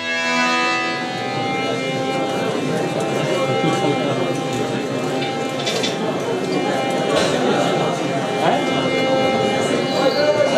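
Sitar notes ring out and fade in the first second as the percussion stops. Then a crowd's overlapping voices fill the rest, with a steady held instrumental tone underneath.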